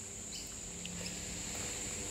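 Steady, high-pitched insect drone in the background.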